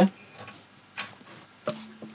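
Handling noise of an electric guitar being picked up: a few faint clicks and ticks, then a sharper knock near the end with a short low note ringing briefly from the strings.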